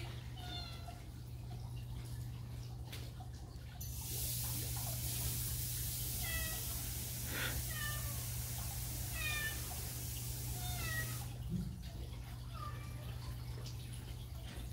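Cats meowing repeatedly, a string of short calls that bend in pitch. From about four seconds in to about eleven seconds, a sink faucet runs steadily, filling a stainless steel water bowl.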